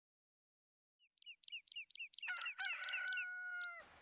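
A rooster crowing: one call that holds and then falls away at the end, starting about two seconds in. It comes over a run of quick high bird chirps, about five a second, that begin about a second in.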